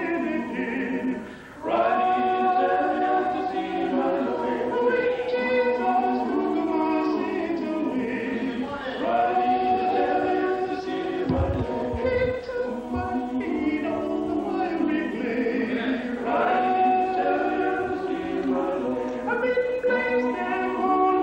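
Male vocal quartet singing unaccompanied in close harmony, with a brief break for breath about a second in before the voices come back in together.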